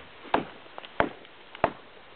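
Hatchet chopping into a tree trunk: three sharp strikes, about two-thirds of a second apart.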